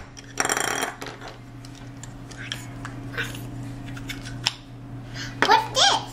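Light taps and clicks of plastic Play-Doh tubs and a plastic tool being handled on a table, over a steady low hum. A brief buzzy scrape comes about half a second in, and a young child's voice is heard near the end.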